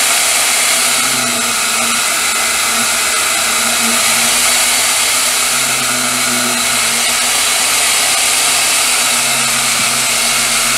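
Small benchtop band saw running and cutting through a block of Delrin (acetal) plastic, a steady whir throughout.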